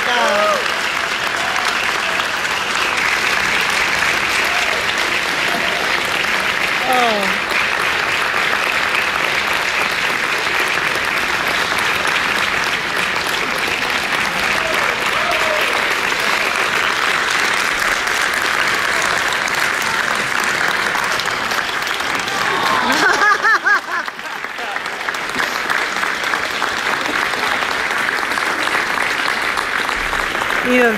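Concert audience applauding steadily, with a few voices close by. The clapping dips briefly a little over 20 seconds in, then carries on.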